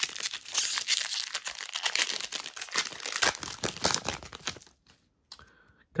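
Trading card pack's shiny wrapper being torn open and crinkled by hand: a dense crackling rustle for about four and a half seconds that then stops.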